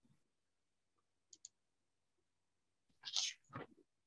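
Computer mouse clicking: two faint clicks just over a second in, then two louder clicks near the end, with quiet between.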